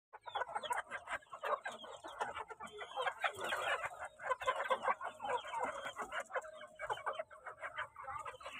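A flock of chickens clucking, a dense chorus of many short, overlapping calls.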